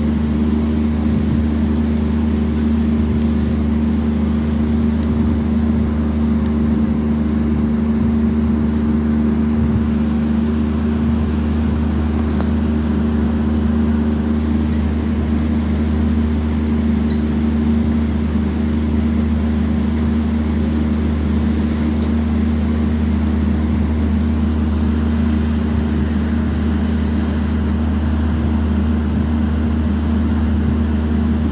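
A machine running steadily with a loud, unchanging low hum.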